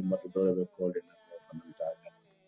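A man's voice speaking in short syllables that thin out after about a second into fainter, scattered sounds, with a faint steady hum behind.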